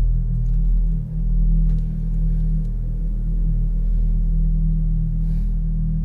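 A deep, steady low drone from the film soundtrack, starting suddenly right after a moment of silence and sustained without a break.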